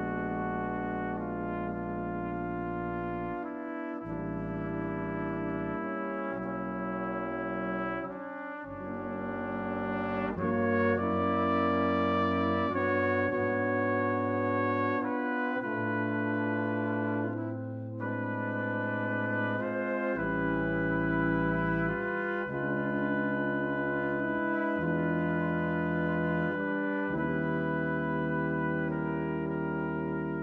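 A brass quintet of two trumpets, French horn, trombone and tuba plays slow, sustained chords, with the tuba's bass note changing every few seconds. The music swells louder about ten seconds in and dips briefly near the middle.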